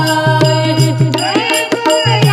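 A woman singing a Marathi gavlan, a devotional folk song, into a microphone, her voice bending and ornamented. Percussion keeps a steady beat of about two strikes a second under a low sustained tone.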